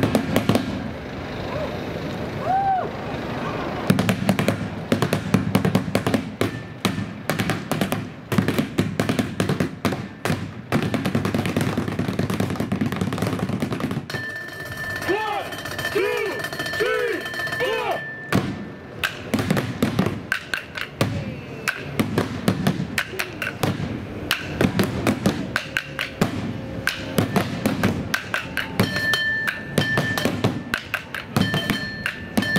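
Drumsticks beating rapid rhythms on barrels and buckets used as drums in a found-object percussion show, starting about four seconds in.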